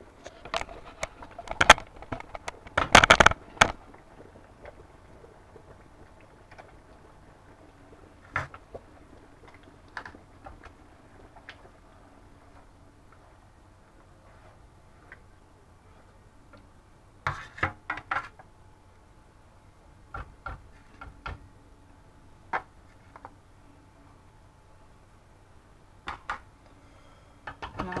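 Scattered knocks and clinks of kitchenware being handled and set down, with quiet room tone between. The loudest clatter comes about two to three seconds in, and shorter runs come later.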